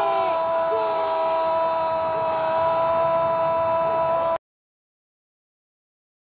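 A football commentator's long, drawn-out goal shout held on one steady pitch over crowd noise, cut off abruptly about four seconds in and followed by silence.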